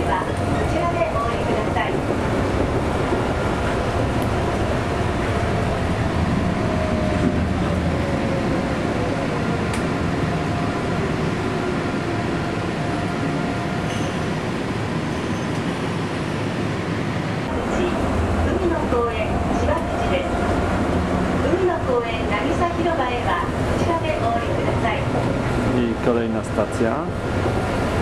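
Inside a rubber-tyred automated guideway train running on its concrete guideway: steady rolling and running noise, with an electric motor whine that slides down in pitch over several seconds in the first half.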